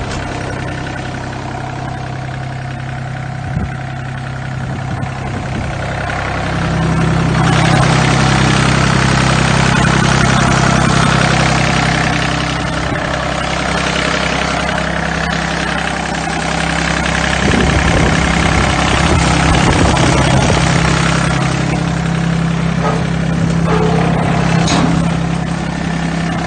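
John Deere F1145 front mower's diesel engine running steadily just after starting, getting louder about six seconds in.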